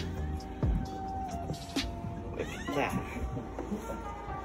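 Background music of steady held tones, with a couple of short knocks about half a second and two seconds in.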